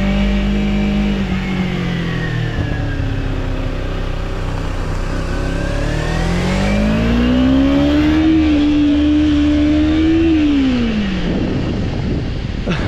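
Kawasaki Ninja 300's parallel-twin engine running under way: the revs ease off early, climb steadily about halfway through as the bike accelerates, hold for a couple of seconds, then drop away near the end.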